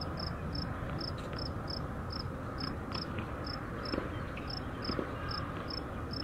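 An insect chirping in short high-pitched pulses, about three a second at slightly uneven spacing, over a steady low outdoor rumble. There are a couple of faint knocks about four and five seconds in.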